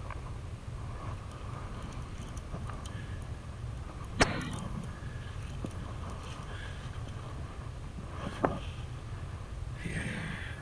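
Steady low rumble of wind and handling noise on a rod-mounted camera as a fishing reel is cranked to bring in a hooked catfish, with two sharp knocks about four and eight and a half seconds in.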